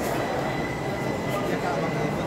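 Label die-cutting and rewinding machine running steadily as a web of printed labels winds through its rollers, with a thin constant high whine over the running noise.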